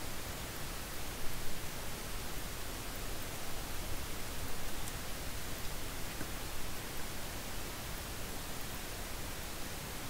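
Steady hiss of an open microphone's background noise, with no other clear sound.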